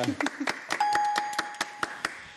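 Small plastic balls clicking and rattling as a hand rummages through them to draw one, then a steady electronic ding about a second long, starting a little under a second in.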